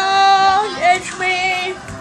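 A high voice singing two long held notes, loud, then fading near the end.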